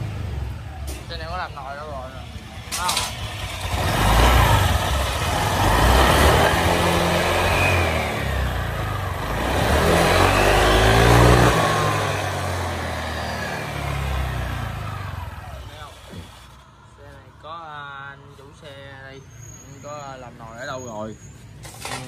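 Honda Vario 150 scooter's single-cylinder four-stroke engine revving hard on the stand, rising and falling through about 4 to 12 seconds, with the CVT belt and drive pulley spinning. This is a top-speed test of a clutch that the owner finds weak. The engine dies down about two-thirds of the way through, and a man's voice follows near the end.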